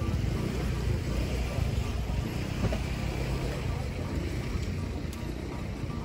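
Outdoor street-market ambience: a steady low rumble with background voices of people nearby.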